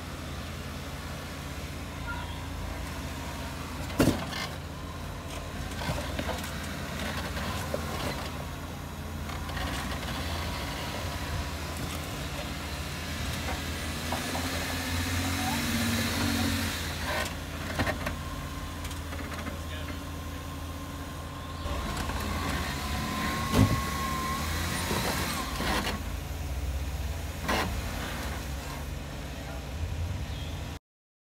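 Lifted Jeep Wrangler Rubicon's engine running steadily at low revs as it crawls over rock and roots, with a few sharp knocks, the loudest about four seconds in and again about twenty-three seconds in.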